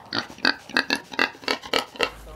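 A pig grunting in a quick run of short grunts, about six a second.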